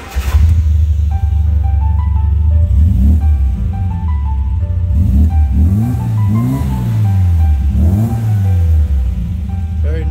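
1967 MGB's 1.8-litre four-cylinder engine running, coming in suddenly and then idling with several blips of the throttle: the revs rise and fall about four times. A good exhaust note from a healthy engine.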